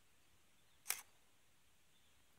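A DSLR's shutter released once about a second in, a single short two-part clack.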